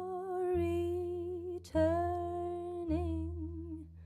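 Female voice sustaining long, slow notes with a gentle vibrato, over low double bass notes that change about every second. This is a slow jazz ballad played live.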